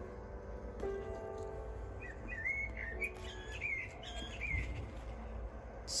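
A small bird twittering in quick, rising and falling chirps from about two seconds in, over faint background music with long held notes.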